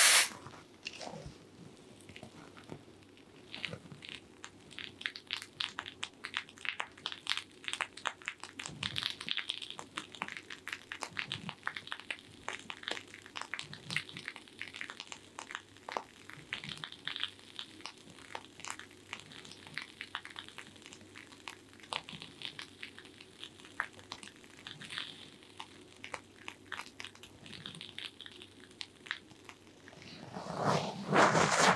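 Fingertips massaging and working through hair on the scalp close to the microphone: a dense, irregular run of soft crackles and rustles.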